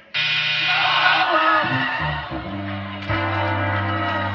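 Game-show losing sound cue: a flat buzz for about a second, then a falling run of brass notes ending in a held low note, signalling a wrong answer and a lost game.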